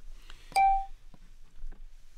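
A short electronic beep from the Rosetta Stone program about half a second in, starting with a click and holding one steady tone for about a third of a second. It signals that the microphone has opened to record the learner's spoken answer.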